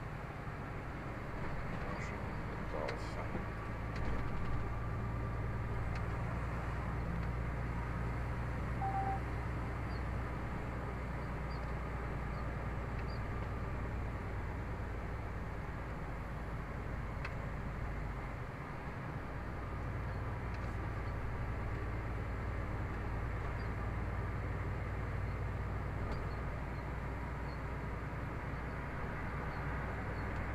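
Steady engine drone and tyre-road noise heard inside a vehicle cab while driving at speed, with one short electronic beep about nine seconds in.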